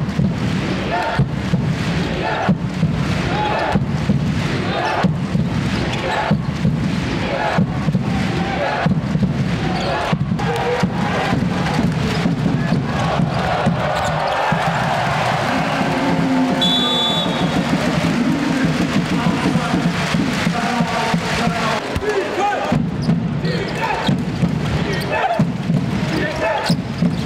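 Live basketball game sound: a ball dribbled on a hardwood court, with repeated bounces over steady crowd chanting and arena music. A short high tone sounds about two-thirds of the way through.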